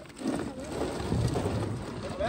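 Ice shifting and plastic water bottles rustling in a cooler as bottles are pulled out of the ice, over a low, rough outdoor background noise.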